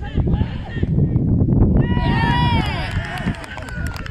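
Players' voices shouting on a football pitch, rising to loud, high-pitched shouts about halfway through as the ball goes into the net, over a heavy low rumble of wind on the microphone.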